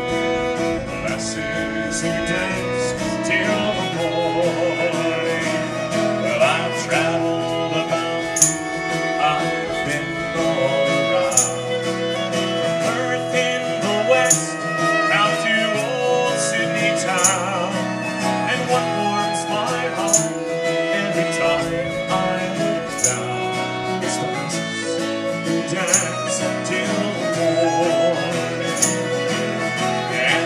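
Live folk music: a fiddle playing a lively tune over a strummed acoustic guitar, with a light high click about every three seconds.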